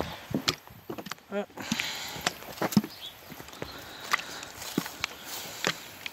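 Footsteps walking over dry grass and gravel, soft crunches coming about twice a second, with a short voice sound a little over a second in.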